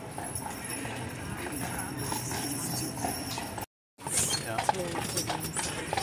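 Horse's hooves clip-clopping at a walk, under faint voices. The sound drops out completely for a moment a little past halfway.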